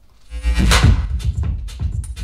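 Recorded music with heavy bass comes in suddenly about a third of a second in, opening with a bright crash-like swell and then a steady beat, played back through a live-sound PA system.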